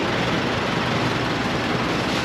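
Steady road traffic noise from cars passing on a busy city street.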